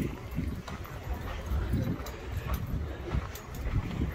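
Footsteps on sandy ground, a run of irregular soft thumps, over a low rumble on the microphone and faint voices in the background.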